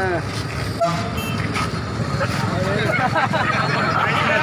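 Street traffic: engines of a passing bus and motorcycles running, with a short vehicle horn toot about a second in.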